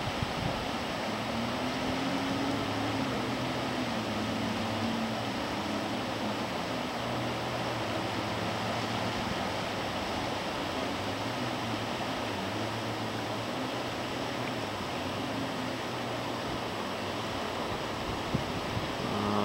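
Steady rush of river rapids, with the distant engine drone of jet skis rising and falling in pitch underneath.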